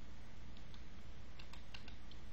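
Faint, scattered clicks of computer input at a desk, one about half a second in and a quick run of four near the end, over a low steady hum.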